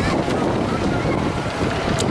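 Steady rushing noise of wind and water spray, with wind buffeting the microphone.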